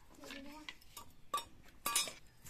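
Steel plate clinking twice, sharp and ringing, about half a second apart in the second half, as cut potatoes and metal are handled against it. A short bit of voice near the start.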